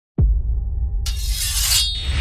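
Logo intro sound effect: a deep bass hit, then a low rumble held under it. About a second in comes a bright, glassy shattering hiss that builds and cuts off sharply near the end.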